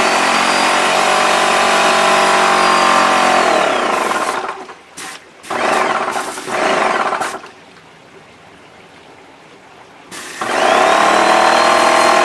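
Graco Magnum X5 airless sprayer's pump motor running with a steady pitched hum for about four seconds, then winding down to a stop. A few short bursts follow, then a quieter gap, and the motor starts again near the end. The on-and-off cycling is the pump building pressure in the spray hose as it primes.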